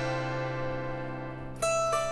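Soft instrumental background music: sustained plucked-string notes fading away, with a new plucked note struck near the end.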